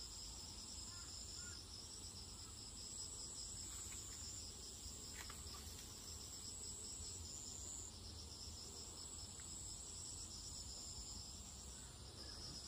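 Faint outdoor insect chorus: a continuous shrill trill with a second, rapidly pulsing trill just beneath it, holding steady over a low rumble.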